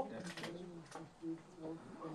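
Faint bird cooing: a few short, soft low notes.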